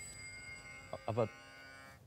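Ringing chime-like tones of a music sting fading slowly, with one short spoken word, "Aber", about a second in.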